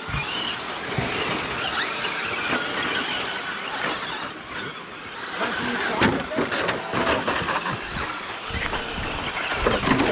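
Traxxas Slash electric RC short-course trucks racing on a dirt track, their motors whining and rising and falling in pitch with the throttle. A few sharp knocks come about six to seven seconds in.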